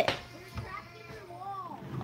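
A faint voice in the background, ending in a short vocal sound that rises and falls in pitch about a second and a half in.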